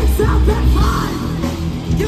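Live heavy metal band playing: electric guitars, bass and drums under a yelled lead vocal.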